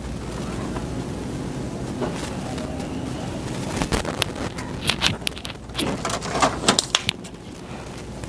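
A steady low rumbling hum for about four seconds, then a run of short clicks and rustles, like things being handled.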